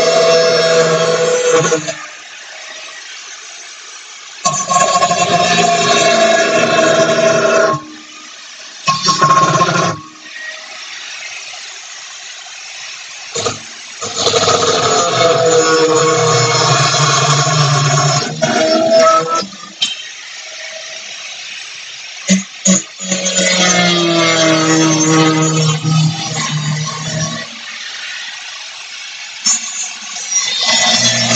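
Handheld angle grinder cutting into steel angle iron, running in several bursts a few seconds long with short pauses between, its whine wavering in pitch as the disc loads up in the metal.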